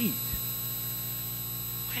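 Steady electrical mains hum in the sound system, with a brief low thump about a third of a second in.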